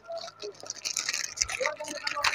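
Clear plastic packaging crinkling and rustling in a steady, irregular crackle as a plastic lunch box is worked out of its bag, with a soft knock or two.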